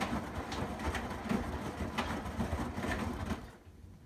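Front-loading washing machine drum turning on a delicates wash cycle, with a low motor rumble and the wet clothes and water sloshing and dropping in the drum in irregular splashes. The drum stops near the end, the pause in the wash rhythm before it turns again.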